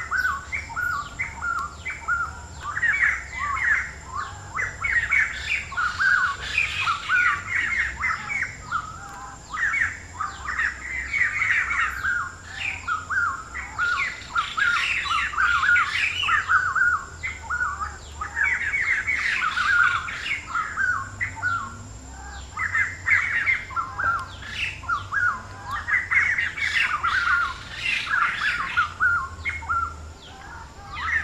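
Birds calling without a break: a dense chorus of squawky chirps, one call running into the next, thinning briefly every few seconds.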